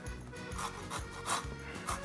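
Hand-held stainless steel rasp zester scraping the peel of a fresh lemon, three short rasping strokes about two-thirds of a second apart.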